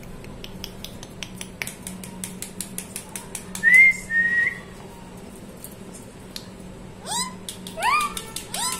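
Indian ringneck parakeet whistling: a short rising whistle and then a level one about four seconds in, and a series of upward-sweeping whistles near the end. Before the whistles comes a run of quick, sharp clicks.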